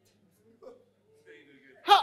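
A pause in a speech, holding only faint voices from the audience. One of them may be a listener calling for a line to be repeated. A man's loud speaking voice comes in just before the end.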